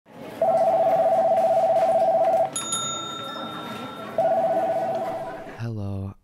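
Telephone ringing twice: a trilling ring of about two seconds, then a shorter one. Between the rings there is a click and faint steady high tones.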